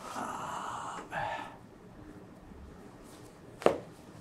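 Chiropractic adjustment of a seated patient's right shoulder: two short rushes of noise, then one sharp crack near the end as the thrust is given, the audible pop of the joint.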